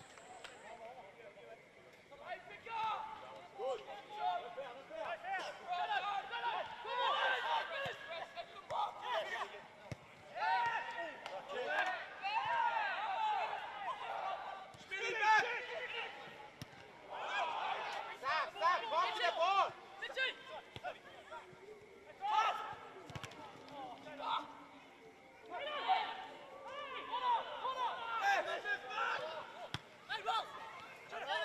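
Footballers' shouts and calls on an open pitch: indistinct voices in irregular bursts, with a few short sharp thuds of the ball being kicked.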